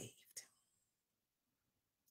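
Near silence in a pause between spoken phrases, with the tail of a word at the very start and one faint short mouth sound about half a second in.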